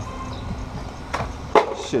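A steady low rumble of outdoor background noise, with one sharp click a little after a second in.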